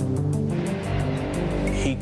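Documentary background music with steady sustained tones and a light ticking beat, about four ticks a second. About halfway in, a rising rushing noise with a low rumble swells under it, a transition sound effect.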